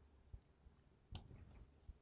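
Near silence with a few faint computer mouse clicks, the clearest just past the middle.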